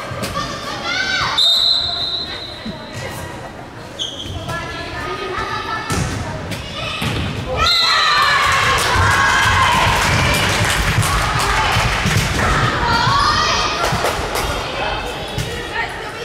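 Indoor volleyball play in a gymnasium: a short whistle, a few sharp thuds of the ball being struck, then players and spectators shouting and cheering during the rally.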